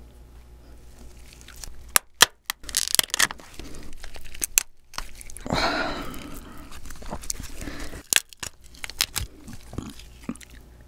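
Steamed lobster tail being pulled apart by gloved hands: the shell cracks and snaps as the meat tears away. Sharp cracks come about two to three seconds in, a longer stretch of noise about halfway, and more snaps near the end.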